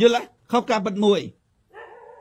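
Only speech: a man talking in Khmer in two short phrases.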